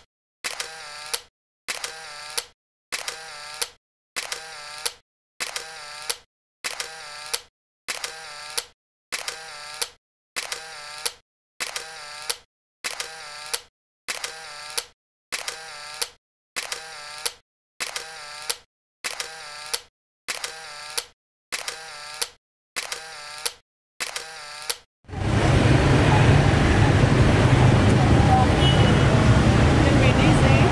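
A camera shutter sound effect repeated about every 1.25 seconds, some twenty times, each sharp click followed by a brief fading sound and a gap of silence. About 25 seconds in the clicks stop and a loud, steady wash of sound begins.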